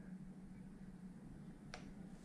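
Quiet workshop room tone with a steady faint low hum, and a single sharp click near the end.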